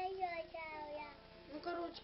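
A young child's high-pitched sing-song voice without clear words, holding long notes that glide downward.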